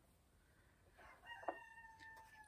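A rooster crowing faintly: one long held call starting about a second in, over near silence, with a small click partway through.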